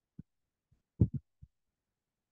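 A handful of short, dull low thumps in otherwise silent audio, the loudest about a second in, with two weaker ones after it.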